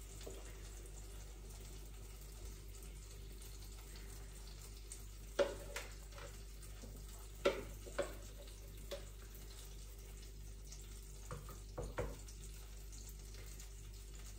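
Spoonfuls of mushroom-and-bacon fritter batter frying faintly in a pan, with a few light clinks of a dessert spoon against the bowl and pan spread through the middle.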